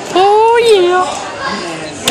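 A high-pitched shout, one drawn-out yell about a second long near the start, rising then falling in pitch, followed by quieter voices.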